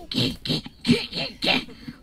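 About five short bursts of voice and breath in two seconds, some pitched and some hissy, as people strain at pulling something heavy in mime.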